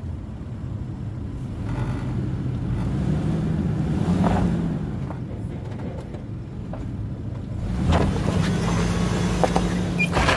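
A 2003 Nissan Pathfinder's 3.5-litre V6 is running under light throttle at crawling speed, swelling twice as it is given gas. Over it come occasional crunches and knocks from the tyres working over rock and gravel.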